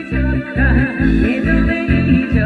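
A woman singing with vibrato into a microphone over a loud amplified backing track with a heavy, regular bass beat; her voice comes in about half a second in.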